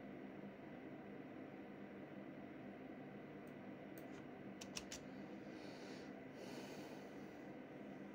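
Faint steady background hum with a few sharp clicks around the middle, followed by a soft hiss lasting about two seconds.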